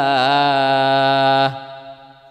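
A man's voice reciting a Quranic verse in melodic style through a microphone, holding the drawn-out final vowel of the verse as one steady note for about a second and a half. It then breaks off, and an echo dies away after it.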